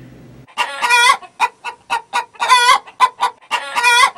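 Chicken clucking: a quick run of short clucks starting about half a second in, broken by three longer drawn-out calls about a second and a half apart.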